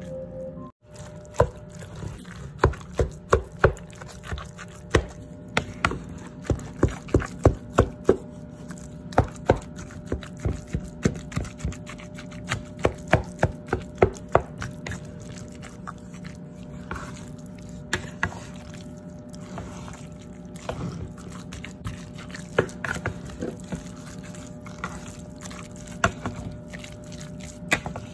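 A wet canned-salmon patty mixture being stirred and mashed in a bowl: irregular squelching with sharp clicks, quick and dense through the first half, then sparser.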